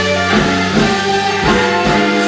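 Live electric blues band playing, with held instrumental notes and several drum-kit hits.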